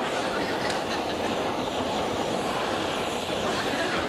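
Hand-held gas torch flame burning with a steady hiss while being played over a vinyl record on a car's body, with a short laugh at the start.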